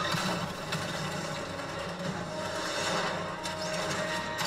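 Steady low engine drone of aircraft in flight from an action-series soundtrack.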